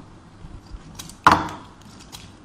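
Large scissors cutting through magazine paper: a few small clicks of the blades, then one loud, sharp snip about a second and a quarter in.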